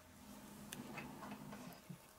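A few faint, light clicks and taps of a clear acrylic stamp block being handled on a craft mat, over a faint low hum.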